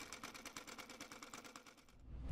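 Near silence with a faint, rapid, even ticking, about ten ticks a second.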